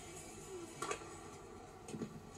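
Tennis racket striking the ball on a serve: one sharp pop about a second in, then a fainter click near the end, over faint steady background music, heard through a television speaker.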